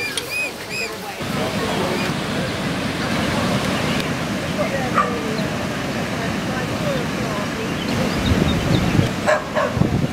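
Mute swan cygnets peeping in a quick run of short, high, arched calls for about a second. Then a steady outdoor noise with scattered distant voices takes over.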